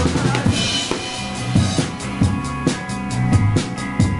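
Live band playing an instrumental passage: drum kit with kick and snare hits and a cymbal crash about half a second in, over held electric bass notes and electric guitar. From about halfway the drummer keeps quick, steady cymbal strikes.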